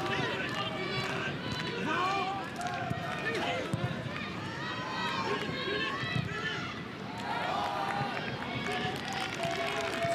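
Several voices calling and shouting over one another across a football pitch during open play, over steady stadium ambience.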